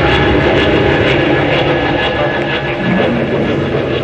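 A Chieftain tank running: a loud, continuous engine rumble with a fast clatter of its tracks.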